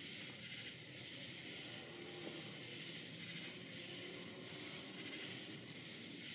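Faint, steady outdoor night ambience: an even hiss with a thin, constant high-pitched whine running through it.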